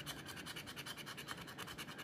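A coin scratching the coating off a scratch-off lottery ticket in rapid, even back-and-forth strokes.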